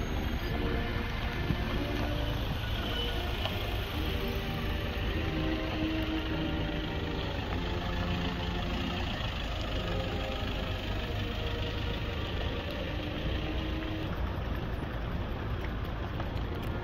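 Engines of several cars and pickups running at low revs as they roll along at walking pace, a steady low rumble, with faint music underneath.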